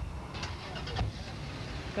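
Low, steady rumble of street traffic, with faint voices in the first second and a short knock about a second in.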